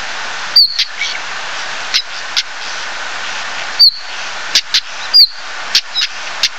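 Male stonechat calling: three short, high whistled notes that slide down in pitch, spaced a few seconds apart. Sharp clicking notes come between them, like the species' hard "tak" calls, over a steady hiss.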